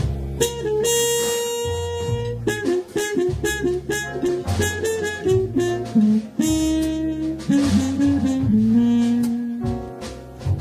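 Live jazz band: trumpet and saxophone playing a melody over upright bass, piano and drum kit.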